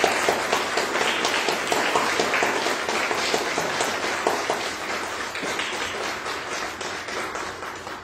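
Congregation applauding; the clapping fades out over the last few seconds.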